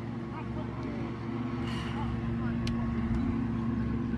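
A steady motor hum holding one low pitch, with faint distant voices over it and a single sharp click a little past halfway.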